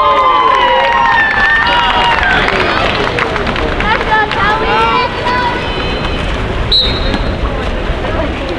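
Crowd of spectators and players shouting and calling out over general chatter, with one short blast of a referee's whistle near the end.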